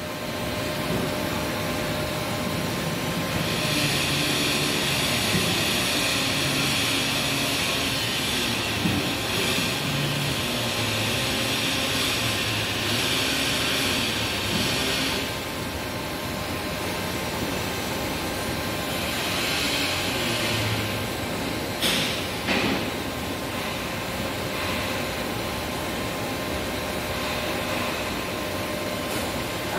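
Homemade 1-ton hydraulic cargo lift lowering its carriage: a steady mechanical running noise, with a higher hiss over roughly the first half and two short knocks a little past the middle.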